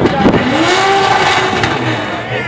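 Off-road race car's engine revving hard on a rock climb, its pitch rising about a third of a second in, holding, then falling away near the end.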